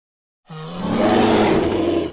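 A bear's roar, starting about half a second in and swelling louder within a second, then holding.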